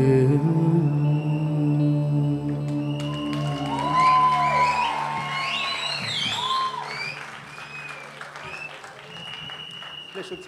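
A song ends on a sung note over a steady sustained drone. About three seconds in, an audience breaks into applause with whoops and cheers, which slowly die away while the drone keeps sounding.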